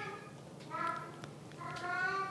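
A domestic cat meowing twice, faintly, about a second apart.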